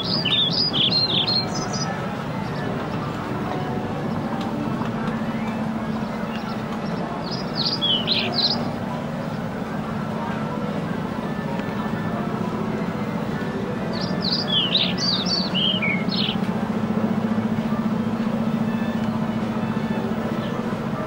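Birds chirping in three short bursts, at the start, about eight seconds in and around fifteen seconds in, over a steady low hum and outdoor background noise.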